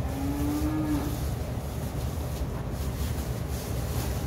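A young calf moos once, a short call of about a second that rises a little in pitch.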